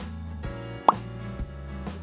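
Soft background music with steady low tones. A little under a second in comes one short plop that drops quickly in pitch.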